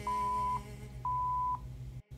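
Workout interval-timer countdown beeps: two identical steady half-second beeps a second apart, counting down the last seconds of an exercise interval, over quiet background music that fades away.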